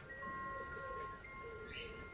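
Faint chime tones: several clear pitches held and overlapping, each starting and stopping at its own time.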